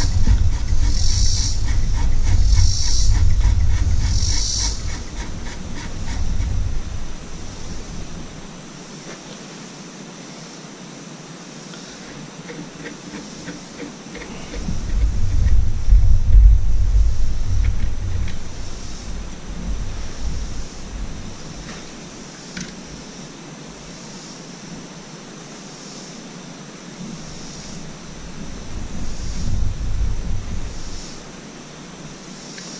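A flywheel puller being threaded by hand onto an outboard motor's flywheel, with soft rhythmic scraping about once a second near the start. Deep rumbling comes and goes in long swells and is the loudest sound.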